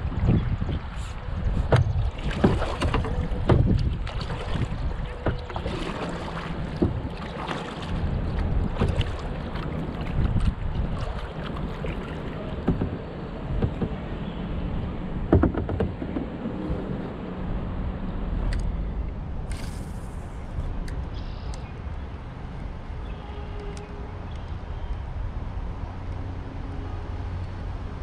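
A kayak paddled on a river: water splashing and lapping at the hull, with irregular short knocks and splashes through the first half. Wind rumbles on the microphone throughout.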